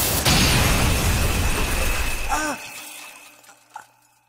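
Anime battle sound effect of two Beyblades clashing: a loud, noisy blast with a second hit just after it starts, shatter-like. It fades out about two and a half seconds in, leaving a short falling pitched sound and a thin ringing tone.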